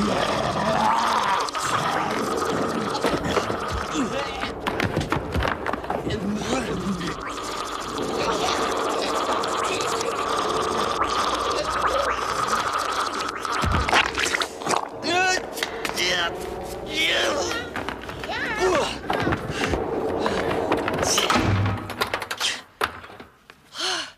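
Horror-film struggle on the soundtrack: wordless cries and shouts over music, with a sharp thud about 14 seconds in. The sound drops away near the end.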